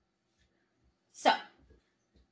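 A woman says "So" once, about a second in; the rest is near silence.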